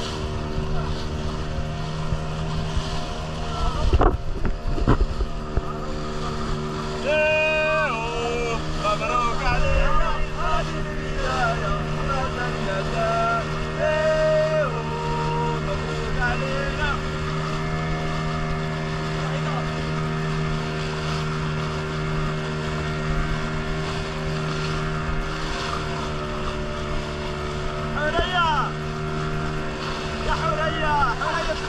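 Motorboat engine running at a steady, even drone under way, with water rushing along the hull and a few low thumps about four seconds in. Voices call out over the engine in the middle and again near the end.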